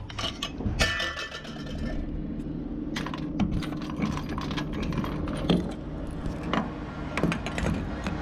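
Refuelling handling: a fuel cap being unscrewed and a diesel pump nozzle put into the filler neck, giving scattered small metallic clicks and clinks, over a steady low hum that starts about two seconds in.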